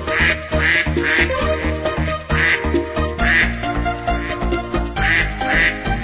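Cartoon duck quacks, about seven in short clusters of two or three, over an upbeat instrumental children's tune with a steady beat.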